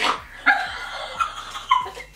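Two young women laughing hard with cheek-retractor mouthpieces holding their mouths open: short, high-pitched laughs, three or four of them.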